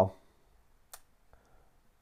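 Computer input clicks: one sharp click about a second in, followed by two fainter ticks.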